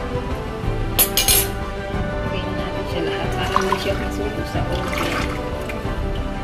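Tomato broth poured from a cooking pot over stuffed peppers in a glass baking dish, trickling and splashing, with a short, loud, hissing burst about a second in. Background music plays throughout.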